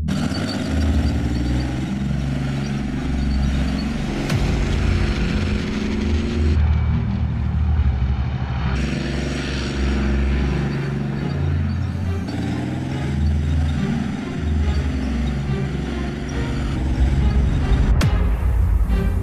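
Leopard 2 main battle tanks driving past: the steady low drone of the twin-turbo V12 diesel engine mixed with the running noise of steel tracks on concrete.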